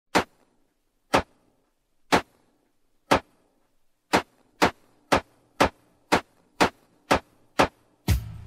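Sharp drum-machine hits playing alone: four single hits a second apart, then eight more at twice the speed.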